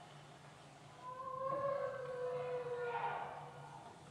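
A recorded long wailing vocalization, which the presenter takes for a Sasquatch calling at a distance, played back over a lecture-hall sound system. It starts about a second in and is held for about two and a half seconds, its pitch falling slightly before it swells once more near the end.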